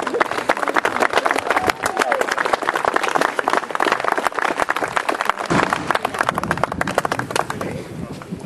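A small crowd applauding, many hands clapping quickly and unevenly, thinning out near the end.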